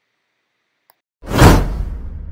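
A loud whoosh sound effect about a second in, part of an animated subscribe-button intro, followed by a lower trailing rumble.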